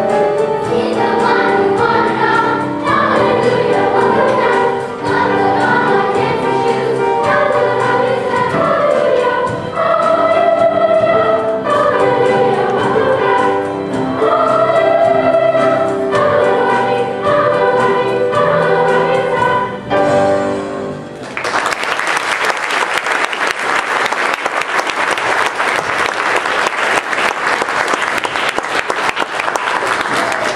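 A children's choir singing a song, which ends about twenty seconds in; then the audience applauds for the rest of the time.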